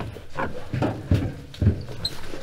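A short sighing "ah", then several dull knocks and thumps about half a second apart as a backpack is lifted off a classroom desk and a person gets up from the chair.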